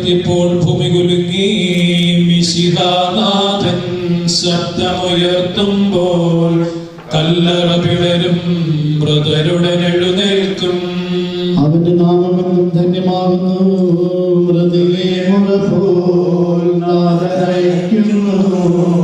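A slow funeral chant sung by a voice in long, held notes. There are brief pauses between phrases about seven seconds and about eleven and a half seconds in.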